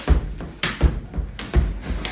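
A jump rope slapping a hardwood floor with the thuds of feet landing, a few jumps at an uneven pace of roughly one every half to three-quarters of a second.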